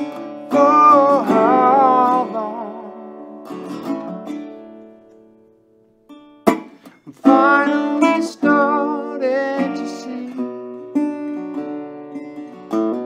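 Mule metal-bodied resonator guitar in open D tuning, fingerpicked and played with a slide: a phrase of slid notes with vibrato that rings out and fades almost to quiet about six seconds in, then a sharp pluck and a new slide phrase.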